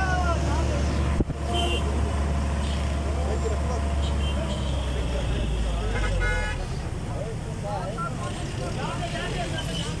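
Street noise around a roadside accident: a steady low vehicle engine rumble under the chatter of a gathered crowd, with a short horn toot about six seconds in, after which the rumble drops away.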